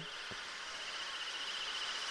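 Faint, steady chirring of insects: a pulsing high buzz over the open-air background.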